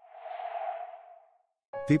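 A short editing sound effect for a screen transition: a soft rushing swell that builds over about half a second and fades away by about a second and a half in. Near the end, background music starts and a voice begins to speak.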